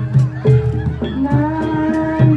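Live Javanese jaranan ensemble music with a steady low beat about twice a second. A long held note starts about a second in.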